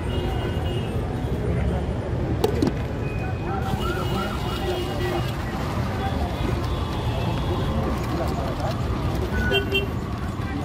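Busy street ambience: a steady traffic rumble with people talking nearby.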